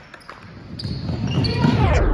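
A basketball bouncing on a gym's hardwood floor a couple of times, then a louder jumble of voices and court noise builds over the second half.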